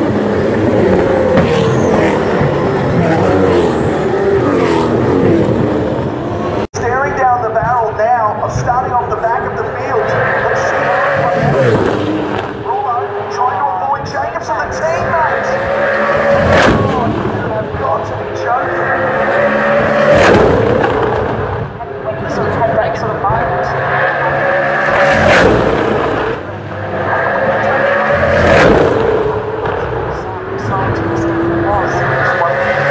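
Race cars passing at speed one after another along the circuit, engine notes rising and falling through the gears, with several loud close pass-bys in the second half.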